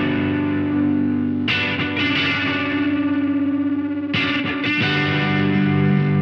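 Alternative rock music with distorted electric guitars holding chords. The chords change about a second and a half in and again about four seconds in.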